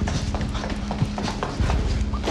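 Hurried footsteps of several people running, a quick patter of knocks over a steady low drone.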